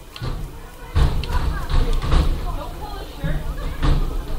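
Voices of people talking in the background, starting about a second in, over low thumps and rumble on the microphone.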